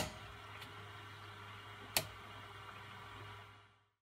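Two sharp clicks about two seconds apart, the first much louder, over a faint steady low hum.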